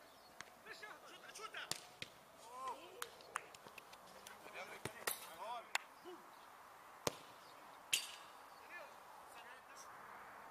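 Football kicked about on artificial turf: a string of sharp thuds of the ball being struck, the loudest two about seven and eight seconds in, among faint shouts and calls of players.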